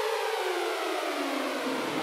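A break in an electronic drum-and-bass outro track: the drums and bass drop out, and a synth tone glides slowly and steadily downward in pitch.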